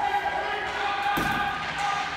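A single long shout held at a steady pitch over the rink's hubbub, with one sharp knock from the play on the ice about a second in, typical of a hockey puck striking the boards.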